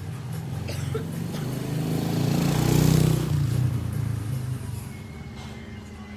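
A motor vehicle passing by: a low engine hum that grows louder to a peak about halfway through, then fades away.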